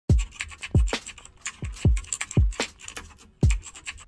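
Intro music with a steady electronic beat: deep kick drums that drop in pitch, about twice a second, with crisp, scratchy high clicks between them.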